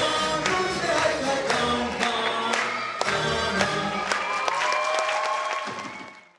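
Live song: a male singer on a microphone with several voices joining in, over hand-clapping about twice a second on the beat. It fades out at the very end.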